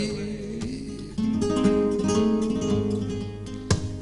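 Flamenco guitar playing a short soleares passage between sung verses: plucked notes, with a sharp strummed chord near the end.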